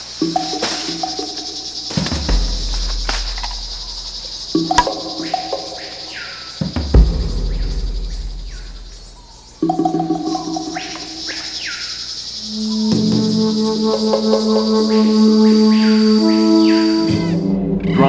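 Dramatic background music with deep booming hits about two seconds in and again about seven seconds in, over a steady high insect drone. The music swells louder from about twelve seconds and stops just before the end.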